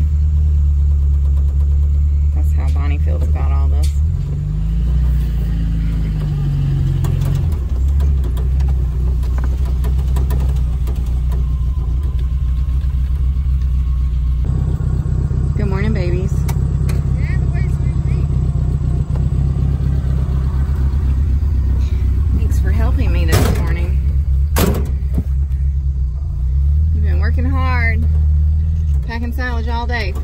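Small 4x4's engine running, heard from inside the cab as a steady low hum. Its pitch shifts as it changes speed a few seconds in and again about halfway through.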